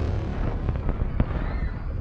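Film sound effects of destruction: a continuous deep rumble overlaid with a dense crackle of pops and snaps, with one sharp crack a little past the middle.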